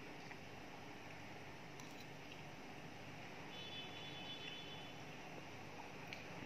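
Quiet room tone, a faint steady hiss, with two faint clicks of a metal spoon and fork against a ceramic plate about two seconds in.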